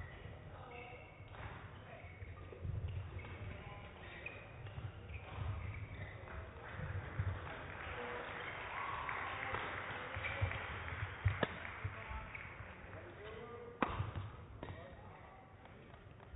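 Badminton rally in an indoor hall: rackets strike the shuttlecock with sharp cracks, the loudest about two-thirds of the way through and another near the end, among court-shoe squeaks and footfalls on the court mat.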